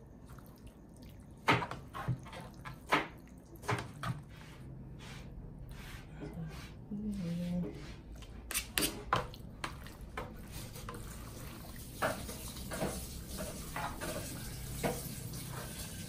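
Two plastic salad spoons tossing dressed penne with tuna in a bowl: soft wet squishing of the pasta, broken by irregular clicks and taps of the spoons against the bowl.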